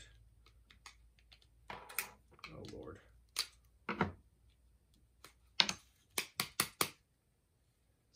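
Scattered sharp clicks and taps from handling a plastic toy grapnel launcher and a small screwdriver while opening its battery compartment. Near the end comes a quick run of about four clicks, as the screwed battery cover stays stuck.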